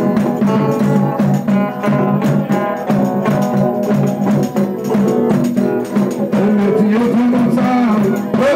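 A live folk band of strummed banjos with a tambourine plays a steady, rhythmic dance tune.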